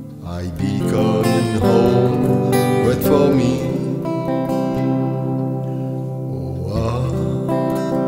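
Electric guitar, a Gibson single-cut, playing a slow melodic passage between sung lines, its notes held long with some bending and wavering in pitch, over steady low notes.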